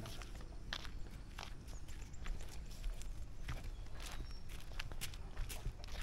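Footsteps of people walking on a dirt path, in a steady walking rhythm of roughly one to two steps a second.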